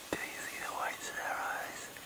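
A person whispering softly, with a sharp click just after the start.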